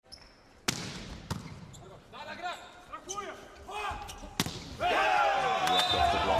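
Volleyball rally in an indoor arena: a sharp hit of the serve about 0.7 s in, a second ball contact about half a second later, short shoe squeaks on the court, and a hard spike a little past the four-second mark. Loud crowd cheering swells up just after the spike as the point is won.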